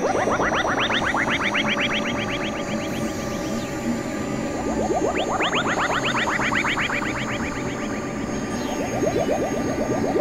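Experimental electronic synthesizer music: rapid trains of short upward-sweeping synth blips, about ten a second, come in bursts of about two seconds with pauses between, over a low steady drone.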